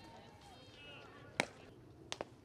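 One sharp crack of a softball impact about one and a half seconds in, over faint, short chirping calls in the first second.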